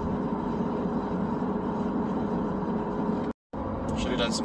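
Steady road and engine noise inside a moving car's cabin, with a faint steady hum. It drops out to silence for a moment near the end.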